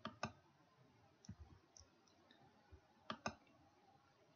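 Computer mouse clicks: a sharp pair right at the start and another about three seconds in, with a few fainter ticks between, over a faint room hush.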